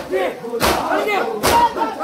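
A crowd of men beating their bare chests with their hands in unison (matam), a sharp slap a little under once a second, over massed male voices chanting a nauha lament.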